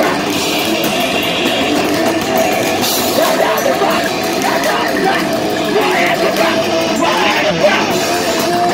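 Loud live heavy rock band playing: distorted electric guitar and drums, with a vocalist shouting into the mic and a note held steadily over the din.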